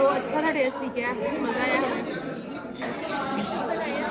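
Indistinct chatter of several voices in a crowded restaurant.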